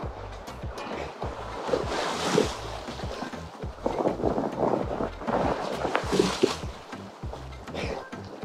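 Ocean surf rushing and splashing close to the microphone as a wave carries a swimmer in, swelling louder about two seconds in and again about six seconds in. Background music runs underneath.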